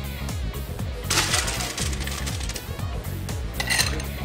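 Ice cubes clattering as a glass is scooped through a steel ice bin and the ice is tipped into tumblers. There is a longer burst about a second in and a shorter one near the end, over background music.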